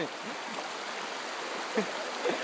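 Shallow rocky stream running: a steady, even rush of flowing water.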